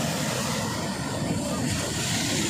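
Sea waves breaking and washing against large shore boulders: a steady rush of surf.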